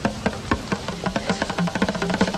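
A pair of bongo drums tapped by hand in a loose rhythm, about four taps a second at first, the taps coming faster in the second half.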